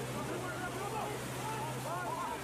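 Rushing floodwater from a swollen river, a steady noise with a steady low machine hum beneath it. Faint shouting voices can be heard over it.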